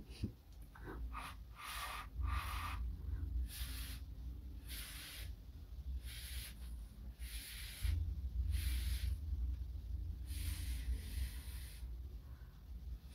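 Short puffs of breath blown through a drinking straw onto wet acrylic pour paint to push the cells outward. There are about ten separate hissing puffs, each about half a second long, with gaps between them.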